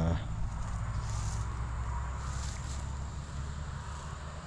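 Outdoor ambience: a steady low rumble of wind on the microphone, with faint rustling about a second in and again a little past two seconds.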